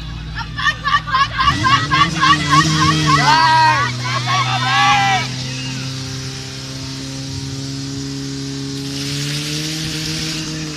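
Fire-sport portable pump engine running hard and steadily, its pitch dropping about three and a half seconds in as it takes the load of pumping water into the hoses, then rising again near the end. Over the first few seconds spectators shout rapid, rhythmic cheers.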